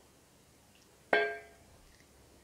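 A single metallic clink about a second in, ringing briefly and fading within half a second: a bread machine pan's wire handle dropping against the pan.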